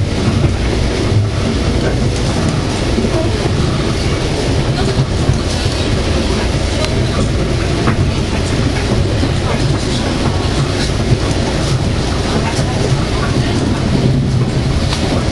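Metro-North commuter train running along the track, heard from inside the passenger car: steady running noise of the wheels on the rails, strongest in the low end.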